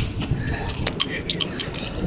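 Plastic highlighter hitting a brick wall with a sharp crack, then a quick run of light, irregular taps and clicks as it and its broken bits bounce and clatter on the concrete sidewalk.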